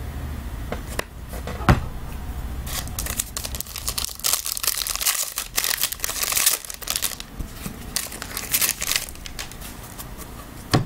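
Foil trading-card pack wrapper being handled and torn open by hand: a sharp click a little under two seconds in, then a dense run of crinkling and tearing from about three to nine seconds in.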